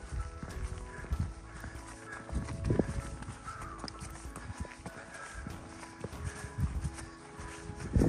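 Footsteps on a stony, gravelly path, a series of hard crunching steps, over background music of soft held tones.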